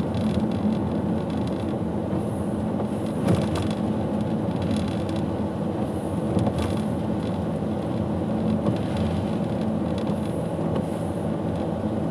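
A car driving slowly along a wet road: a steady low engine hum with tyre and road noise, broken by a couple of brief faint clicks.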